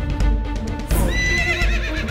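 A horse whinnying with a quavering neigh, starting about a second in, over background music with a steady drone and regular beats.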